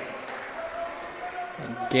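Faint gymnasium background murmur of distant voices during a timeout, with a man's voice starting near the end.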